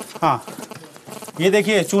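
A man speaking Hindi, with a pause of about a second near the middle before he resumes talking.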